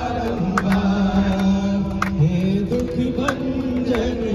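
A male voice singing a Hindu devotional bhajan, holding long drawn-out notes, with a few scattered sharp hits.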